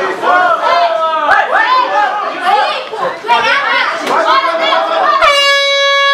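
Ringside spectators shouting and cheering over one another at a Muay Thai bout. About five seconds in, a steady air-horn blast cuts in and holds past the end.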